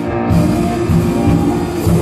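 Live gospel worship music: piano with drum kit playing under held notes, with low drum hits recurring throughout.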